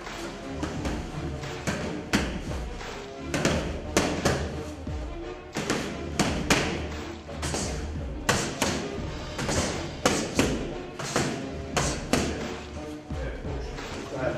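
Boxing gloves punching focus mitts: a run of sharp slaps in quick combinations, often two or three close together, over background music.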